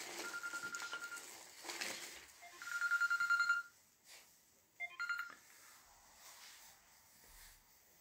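Mobile phone ringing with an incoming call: a high electronic ringtone sounding in three bursts, the middle one loudest and pulsing, and cutting off about five seconds in when the call is picked up.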